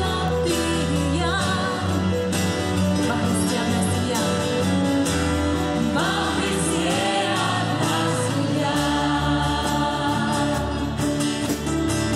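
Live gospel worship song: a choir and congregation singing together with a small band of violin, flutes, acoustic guitar and keyboard, playing on without a break.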